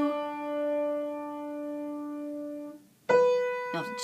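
Piano playing a single note, the low 'do' (D) that ends a fa–re–do pattern in D. It rings on and fades away, and a new single note is struck about three seconds in.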